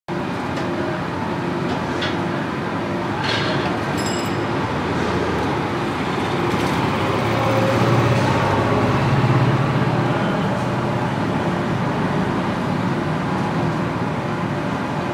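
Steady road-traffic noise, with a heavier engine hum swelling and fading about halfway through as a vehicle passes.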